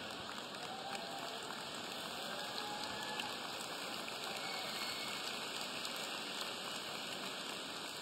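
A large audience in a big convention hall applauding steadily, with some laughter mixed in.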